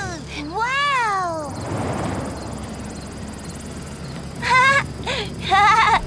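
Wordless cartoon character vocalizations: one drawn-out call that rises and falls in pitch about a second in, a soft rushing noise, then quick wavering voice sounds near the end.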